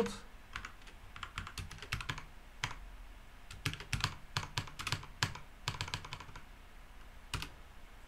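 Typing on a computer keyboard: irregular keystroke clicks in quick runs with short pauses, as a shell command is entered in a terminal.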